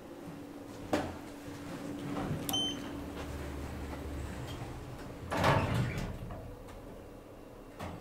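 Schindler 3300 MRL elevator car: a knock about a second in, then a short high beep from the car's button panel. The automatic sliding doors close with a low rumble and come shut with a loud bump about halfway through, followed by a click near the end.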